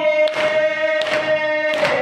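A noha, a Shia lament, sung on a long held note by a reciter with the group of mourners, over rhythmic matam: open hands striking chests together three times, about three-quarters of a second apart.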